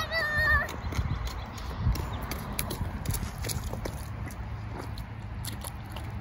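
A child's short high-pitched squeal, then irregular footsteps of rubber rain boots crunching on a gravel path as she runs.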